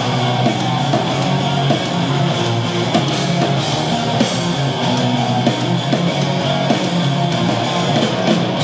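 Punk rock band playing live: distorted electric guitars, bass and drums, with a steady beat of drum hits.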